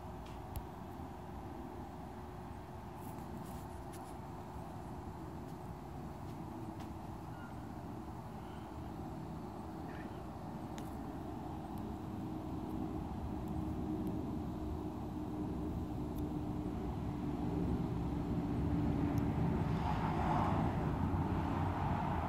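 A steady engine drone with a faint hum, slowly growing louder throughout, from a low-flying aircraft overhead and a car approaching along the road. The car's noise swells in the last few seconds.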